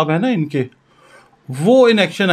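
A man's voice speaking, broken by a pause of under a second about two-thirds of a second in. During the pause only a faint rubbing sound is left.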